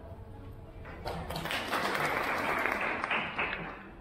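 Audience clapping, starting about a second in and dying away near the end.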